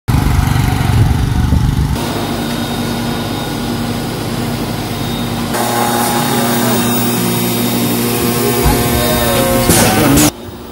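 A small motorcycle engine running for about the first two seconds. After that, the steady hum of a tray-seeding machine with several steady tones.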